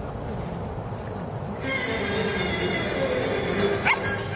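Music for a dog-dance routine starts about one and a half seconds in with held tones. Just before the end comes a short, sharp rising cry.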